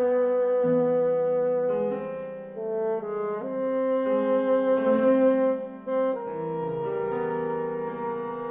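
A contemporary chamber ensemble playing a passage from a bassoon concerto: sustained, overlapping held notes that shift into new chords every second or so. Near the middle, a loud held note pulses rapidly before the texture settles into a quieter sustained chord.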